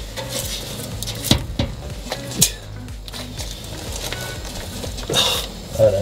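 Metal clinks and knocks from a truck's muffler and exhaust pipe being pushed and worked loose by hand at a stuck joint, with two sharp clinks about a second and two and a half seconds in.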